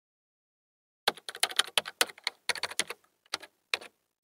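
Computer keyboard typing: a quick, uneven run of key clicks starting about a second in, in short flurries with brief pauses, as text is typed into a search bar.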